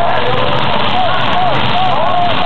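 Demolition derby cars' engines running hard and revving, their pitch rising and falling in long sweeps over a steady loud drone, with voices mixed in.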